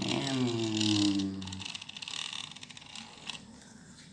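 A drawn-out voice with falling pitch for the first second and a half. Then a plastic toy sports car is pushed along a tiled floor, its wheels making a faint rattling scrape that fades away.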